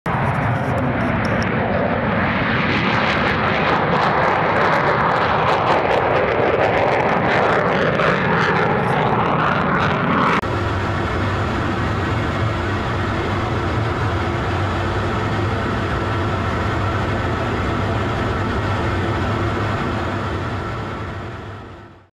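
Military jet aircraft engine noise. For about ten seconds a loud jet noise swells and shifts in pitch. A sudden cut then brings a steadier, lower jet engine sound with a hum, which fades out at the end.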